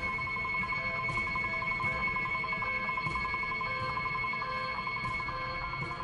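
Electronic laboratory warning alarm sounding a steady high-pitched warbling tone, the signal to clear the room before a gas gun is fired.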